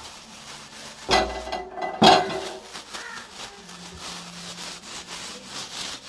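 Hand rubbing and scrubbing on a stainless steel gas stove, with two louder scraping strokes about one and two seconds in, then quieter steady rubbing.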